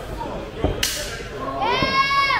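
A single sharp slap of a wrestling strike landing on a wrestler's body. A long, high-pitched shout from a spectator follows near the end.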